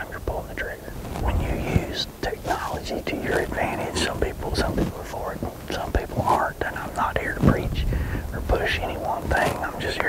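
A man whispering in short phrases, the hushed talk of a hunter on stand.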